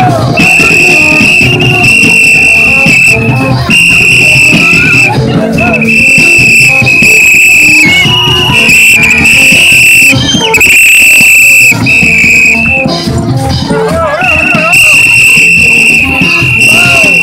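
Gagá street band playing in procession: a shrill, high note blown in long blasts of one to two seconds with short breaks, over lower horn notes, shakers and voices.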